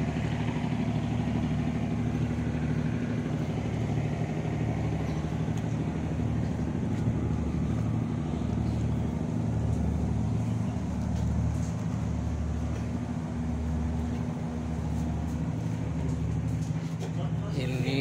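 Fishing boat's onboard engine running, a steady low hum with a slow throb about once a second.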